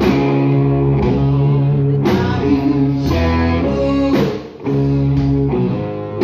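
Live rock band playing: loud, ringing electric guitar chords over bass and drums, the chords changing about once a second. The sound drops out briefly a little past four seconds in, then the band comes back in.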